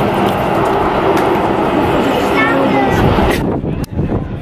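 Airport apron noise: jet airliner engines running as an aircraft taxis, with indistinct voices of people nearby. The sound changes abruptly and gets quieter about three and a half seconds in.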